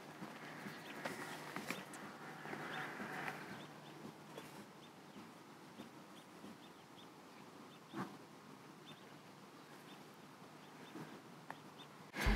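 Faint outdoor quiet with a small bird chirping softly and repeatedly, and a single soft knock about eight seconds in.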